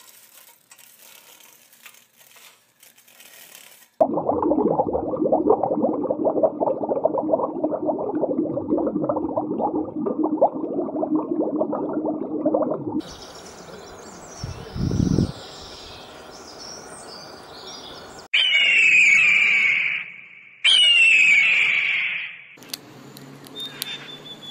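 A string of different animal sound clips. A faint opening gives way to about nine seconds of loud, continuous rough noise. Near the end come two loud screams from a bird of prey, each about two seconds long and falling in pitch.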